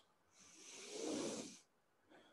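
A man's single deep breath, a soft rush of air lasting about a second.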